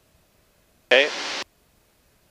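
Near silence, broken about a second in by one short spoken "okay" that switches on and off abruptly, as on a gated headset intercom feed; no engine noise comes through.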